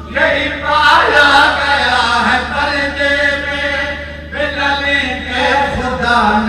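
A man's voice chanting Majlis recitation in a melodic, drawn-out style through a microphone and loudspeakers, with a brief break about four seconds in.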